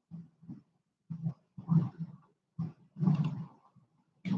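Quiet, indistinct voice heard in about five short bursts.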